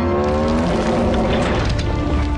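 Film sound effects of a giant robotic dinosaur (the Dinobot Grimlock) being forced to the ground: a rising metallic mechanical cry, then crashing and scraping of metal and debris. Orchestral score runs under it.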